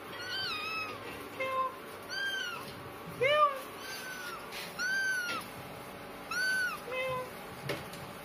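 Kittens meowing, a string of about eight or nine short, high-pitched calls that rise and fall, one every second or so, some higher and some lower in pitch.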